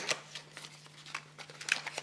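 Soft rustling and a few light clicks of a small cardboard box being handled as a glass foundation bottle is taken out of it.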